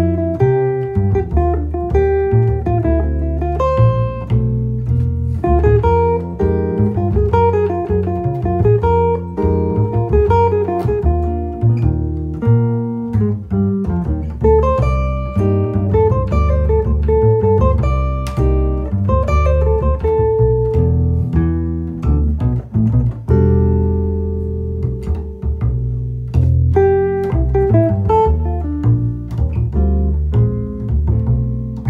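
Jazz duo of a Gibson ES-330 hollow-body electric guitar playing single-note lines and a double bass plucked pizzicato, walking beneath it.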